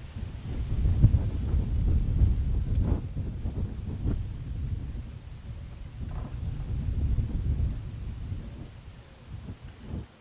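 Wind buffeting the microphone: a low rumble that swells twice, first about a second in and again around six seconds, then dies down near the end.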